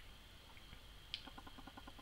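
Near silence: faint room tone with a steady high-pitched whine, one soft click a little past a second in, then a short run of faint rapid ticks.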